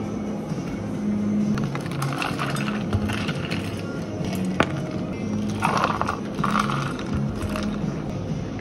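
Ice cubes rattling into plastic cups as a metal scoop drops them in, in two bursts, with a sharp click between them, over background music.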